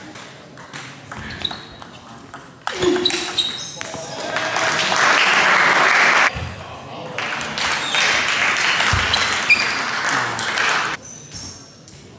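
Table tennis rally: the celluloid ball ticks sharply back and forth off rubber bats and the table top. Voices and a loud rushing noise fill the hall from about three seconds in until near the end, with a short break a little past halfway.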